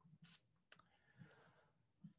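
Near silence: room tone with a low hum and two faint short clicks in the first second.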